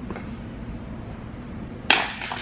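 A rubber toilet plunger smacking onto a hard floor once: a single sharp slap near the end, over a low steady background.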